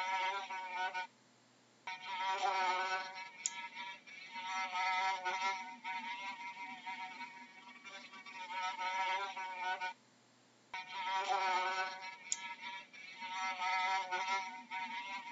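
A fly buzzing in flight, its pitch wavering up and down. The buzz cuts out for under a second about a second in, and again about ten seconds in, as the looped recording restarts.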